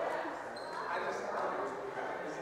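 Indistinct chatter of voices echoing in a large hall, with a brief high squeak about half a second in.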